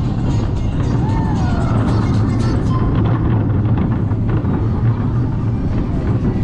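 Vekoma Roller Skater family coaster train running through curves on its steel track: a steady low rumble of the wheels with a fine clatter, and a few brief high gliding squeals.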